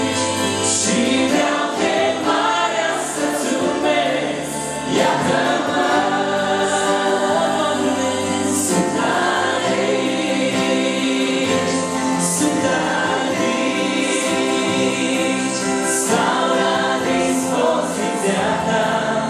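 A church congregation of many voices singing a hymn together in Romanian, in long, continuous sung phrases.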